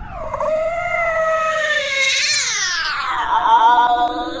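A long, drawn-out cat-like yowl: one continuous wailing cry that holds, rises in pitch about two seconds in, then slides down near the end.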